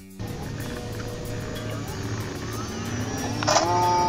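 Background music with a steady beat, mixed with the whine of a model Cessna 182 floatplane's motor. The motor rises in pitch about three and a half seconds in as it speeds up across the water, then holds steady.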